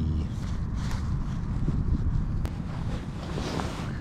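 Wind buffeting the microphone: a steady low rumble, with one faint click about halfway through.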